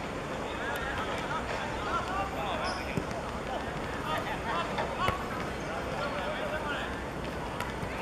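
Players' voices shouting and calling across the pitch during live football play, several at once and in short bursts, with a couple of sharp knocks about three and five seconds in.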